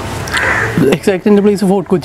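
A man speaking, after a short harsh, noisy sound in the first second.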